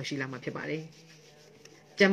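A person speaking for under a second, then a quiet pause.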